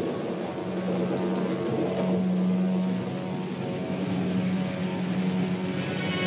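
A steady low drone: a held humming tone over a rushing noise.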